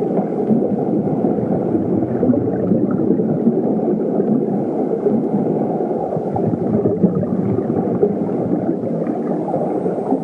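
A steady, low, muffled rumble with no beat, tune or voice: an ambient sound-effect bed in the soundtrack.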